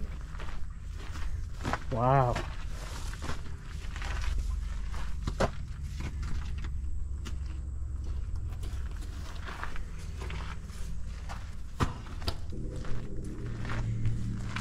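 Footsteps walking over dry grass in uneven, scattered steps, over a steady low rumble. A short wavering vocal sound about two seconds in.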